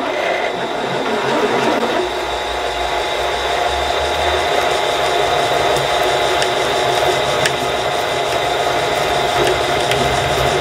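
Milling machine spindle turning slowly at about 170 RPM while a 20 mm twist drill bores into a metal block, making a steady mechanical running and cutting sound.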